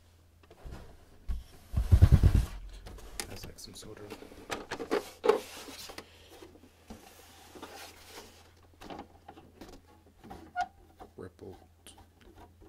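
Hands handling a plastic Canon printer: a loud, low handling bump about two seconds in, then scattered plastic clicks, knocks and rubbing as the body and a ribbed plastic tray are moved.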